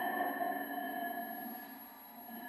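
Ambient electronic sound installation: several steady high tones sustained together as a drone, fading down toward the end.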